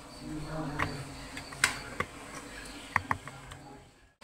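Mango chunks being tipped from a ceramic plate into a plastic blender jar: a few sharp clicks and knocks, two in quick succession near the end.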